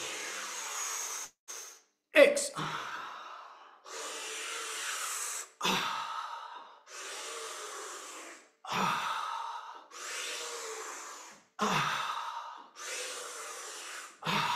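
A man breathing forcefully and audibly in a breathwork exercise: loud rushing inhales and exhales, about ten in turn, each lasting a second or so.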